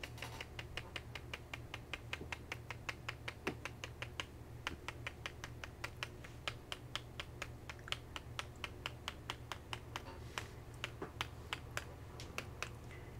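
A small pump spray bottle's nozzle pressed over and over in quick succession, clicking about five times a second as it spatters droplets of shimmer stain.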